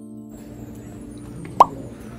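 A single short, loud pop that drops quickly in pitch about one and a half seconds in, like an edited-in 'plop' sound effect. It sits over low background noise, after a few held background-music notes stop just after the start.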